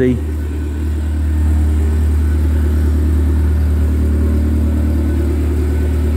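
MG TF's engine idling steadily: a low, even hum with no revving, running quietly just after a cold start.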